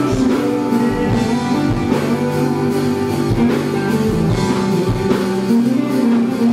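Live rock band playing an instrumental passage, led by an electric guitar (a Fender Stratocaster) over drums, with a regular drum beat.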